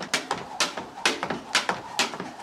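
Jump rope skipping on wooden decking: a sharp slap of the rope and landing feet with each jump, about two a second.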